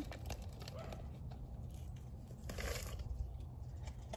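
Potting and seed-starting mix poured from one plastic cup into another: a soft, grainy rustle of soil, loudest about two and a half seconds in.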